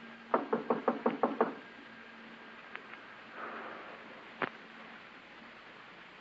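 Knocking on a wooden door, a radio drama sound effect: a quick run of about six raps about a second in, then a pause as nobody answers, and a single sharp click near the end.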